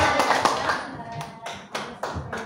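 Audience applause dying away in the first second, leaving a few scattered single claps.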